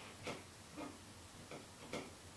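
Faint, light ticking in a quiet room, a tick roughly every half second, a little uneven in spacing.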